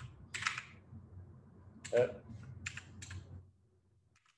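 Computer keyboard keystrokes: a handful of separate taps as a word is typed, with a short vocal sound about two seconds in. The sound cuts off a little past three seconds.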